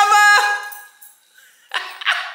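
A voice singing a held note that steps in pitch and dies away about half a second in, followed by a short, sharp noise near the end.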